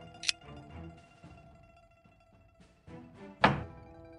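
Xiangqi game sound effects over background music: a short sharp click about a quarter second in, then a louder knock of a chess piece being set down near the end.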